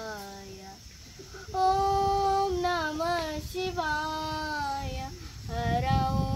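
A girl singing a Carnatic krithi in raga Revathi as a solo voice, holding long notes that waver in ornamented pitch. There is a short break about a second in before she comes back in louder.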